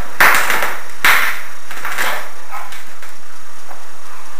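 Scraper blade being dragged over the inside surface of an old aquarium tank in short rough strokes, about one a second, the first two the loudest.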